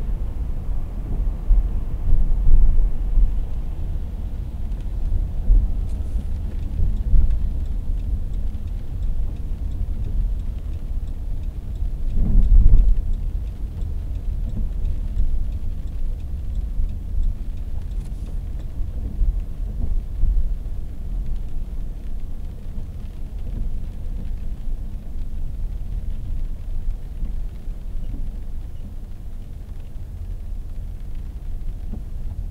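Steady low rumble of a car's engine and tyres heard inside the cabin while driving slowly, with a louder swell of rumble about twelve seconds in.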